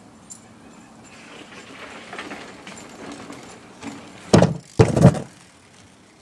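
Small wheels rolling, getting louder over a few seconds, then two loud bangs about half a second apart as the rider hits the ramp.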